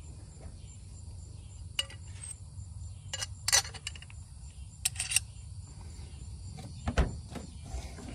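A few scattered light clicks and clinks of metal parts being handled: a bolt, a spacer and a billet-aluminum oil catch can. A steady low hum runs underneath.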